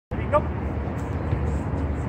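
Steady low rumble of outdoor background noise on the camera microphone, starting abruptly, with a brief spoken "Nope, go" near the start.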